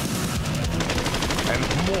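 Rapid automatic gunfire, a fast, even string of shots that stops about one and a half seconds in.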